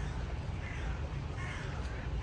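A crow cawing, two harsh calls about a second apart, over a steady low rumble.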